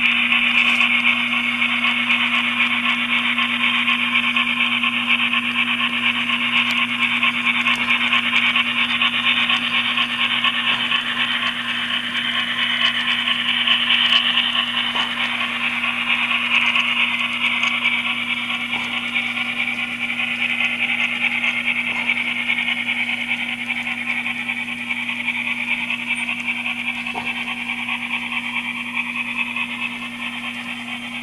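N scale model steam locomotives running past close by: a steady, high whirring of their motors and gears with wheel rattle on the track, easing off in the second half.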